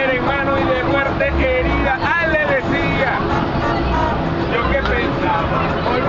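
Men's voices singing and shouting over loud music with a repeating bass line, with vehicle running noise beneath.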